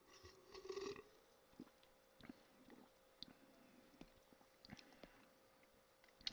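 Faint swallowing as soda is drunk from a glass stein, mostly in the first second, then near silence with a few small soft clicks.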